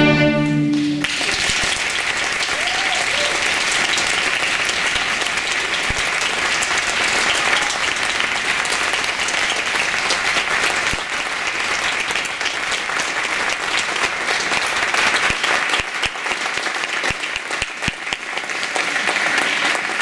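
The last chord of a string orchestra and violin soloist cuts off about a second in, and then sustained audience applause fills the rest.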